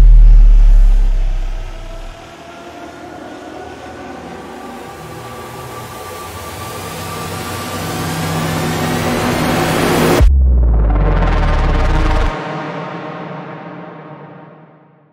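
Edited-in cinematic music: a deep bass hit opens a rising riser that swells for about ten seconds and cuts off abruptly, then a second deep bass hit with held chords that fade away near the end.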